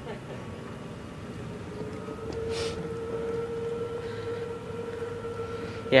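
Electric pallet truck's drive motor running with a steady, even whine that comes in about a second and a half in, over a low hum and rolling noise.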